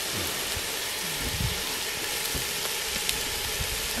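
Steady sizzling hiss of a pot of soup cooking over a wood-and-charcoal fire in an open brazier, with a few faint clicks and knocks.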